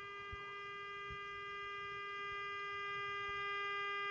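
Steady, slightly buzzy test tone from the Ducati RR2050 valve radio's loudspeaker: the audio modulation of a signal generator's test signal, received by the set. The tone slowly grows louder as the intermediate frequency transformers are peaked.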